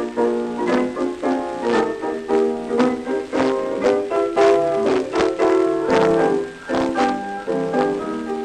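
A piano duet playing a lively 1920s popular tune in quick, rhythmic chords, heard from an early electrical recording on a 1930 Victor 33 rpm record.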